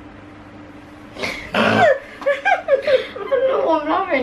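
Laughter: a sudden breathy burst about a second in, then high-pitched giggling that rises and falls in pitch.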